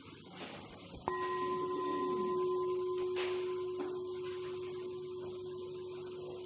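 Metal singing bowl struck once with a wooden striker about a second in, then ringing on with a steady low tone and a higher overtone that fade slowly.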